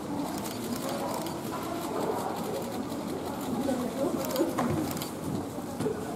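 Indistinct chatter and murmuring of several voices at once, no single speaker standing out.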